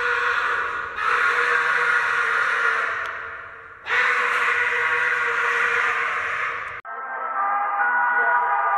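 A man's long, harsh yells of 'aaaah' at a weightlifting attempt, one after another, each starting suddenly and one trailing off before the next. Near the end the sound cuts off abruptly to a different, duller sound.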